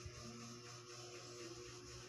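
Faint room tone with a low steady hum and hiss, and one soft bump just after the start.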